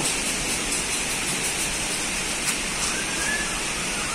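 Steady, even hiss of background noise, with one faint click about two and a half seconds in.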